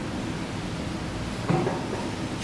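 Steady room noise in a lecture hall, with a single soft thump about one and a half seconds in.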